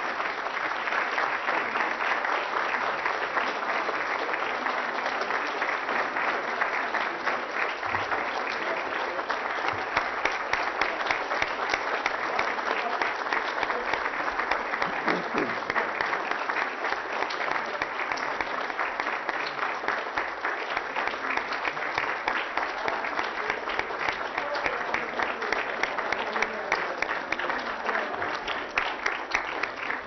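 Large audience applauding: many hands clapping in a dense, sustained round that thins a little near the end.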